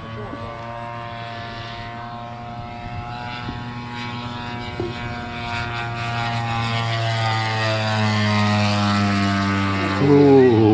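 Engine and propeller of a large radio-controlled P-39 Airacobra model in flight, a steady drone of stacked tones that grows louder as the plane comes in low, its pitch easing down slightly near the end as it passes.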